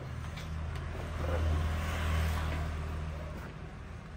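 A motor vehicle passing by: a low engine rumble with a rushing sound that swells from about a second in, peaks at about two seconds, then fades.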